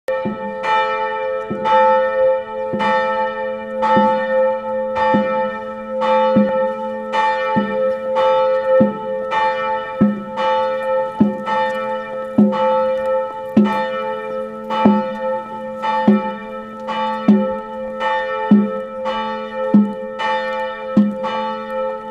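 A single church tower bell tolling slowly and steadily, one strike about every second and a quarter, each strike ringing on into the next. It is a memorial toll for the remembrance of the war dead.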